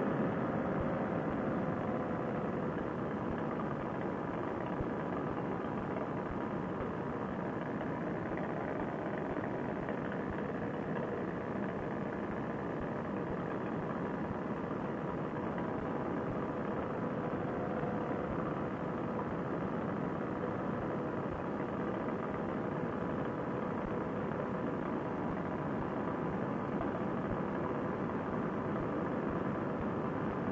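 Paramotor trike engine running steadily in flight, a constant drone mixed with wind noise, heard muffled through a Bluetooth helmet-headset microphone.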